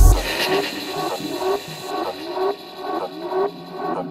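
Techno track dropping into a breakdown: the kick drum and bass stop right at the start, leaving a repeating figure of short upward-sliding synth notes. A high hissy layer cuts off about two seconds in.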